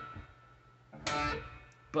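Schecter electric guitar in drop D tuning. A picked note fades at the start, then a second note is struck about a second in and left to ring out.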